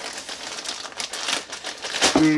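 A plastic mailer bag being rustled and crinkled by hand as it is opened, with small irregular crackles.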